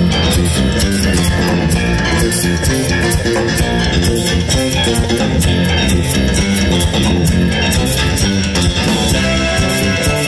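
Live rock band playing loud and steady: electric guitar, bass guitar and drum kit with keyboard, heard through the band's stage amplification.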